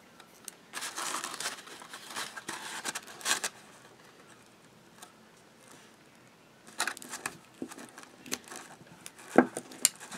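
Cardstock rustling and crinkling as hands fold, press and tape a white paper milk-carton box: a few seconds of irregular handling noise, a quiet pause, then light crinkles and sharp taps of the paper near the end.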